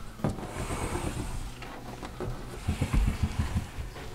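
Handling and movement noises in a small room: a sharp click about a quarter second in, then a run of soft, low thumps a little before the end, like footsteps as someone steps into a closet.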